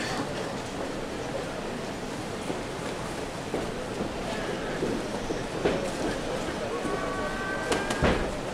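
Boxing crowd murmuring and calling out around the ring, with a few sharp knocks. A short steady tone sounds near the end.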